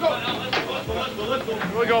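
Several men's voices shouting and talking over one another, with a single low thump a little under a second in.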